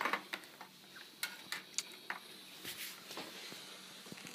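A few faint clicks and taps scattered through a quiet room: handling noise from a phone camera and hands moving about inside an opened computer case.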